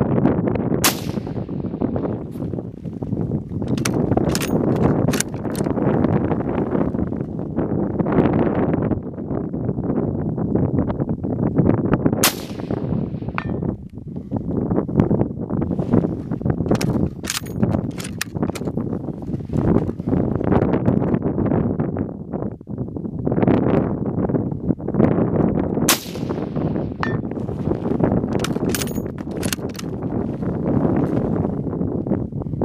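Three shots from a bolt-action military rifle, spaced about twelve seconds apart. A few seconds after each shot comes a quick run of metallic clicks and clacks as the bolt is worked to chamber the next round. Wind rumbles on the microphone throughout.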